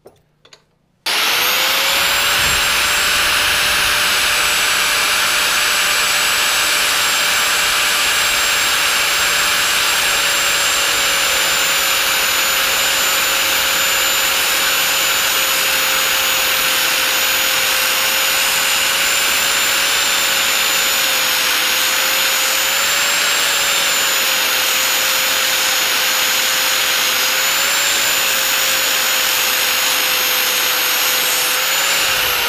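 A few light clicks, then about a second in an angle grinder starts up and runs steadily, grinding the cutting edge of a steel finish-mower blade to sharpen it. Its whine sags slightly in pitch as it bears on the steel.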